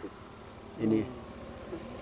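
Insects chirring steadily in a high, even pitch, with one short spoken word about a second in.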